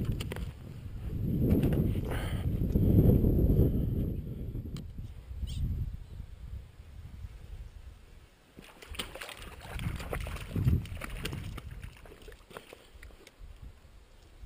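Water sloshing and splashing, with dull rumbling noise over the first few seconds and a few sharp splashy strokes later on.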